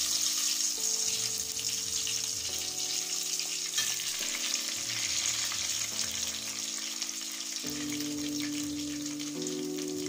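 Parboiled potato chunks deep-frying in hot oil in a metal pot, a steady sizzle. Soft background music with slowly changing chords plays underneath.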